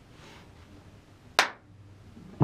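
Low room tone, broken about one and a half seconds in by a single sharp click that dies away quickly.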